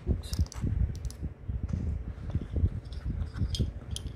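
Close handling sounds of metal pin badges being pushed into a stuffed fabric pin cushion: irregular soft bumps and rustling, with a few small sharp clicks of the badges' metal.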